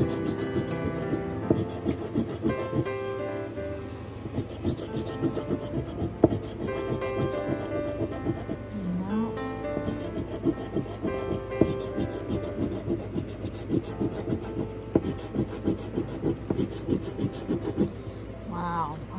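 A metal coin scratching the coating off a scratch-off lottery ticket in rapid, uneven strokes, over background music.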